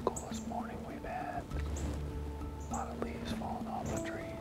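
A man whispering over background music with long held low notes.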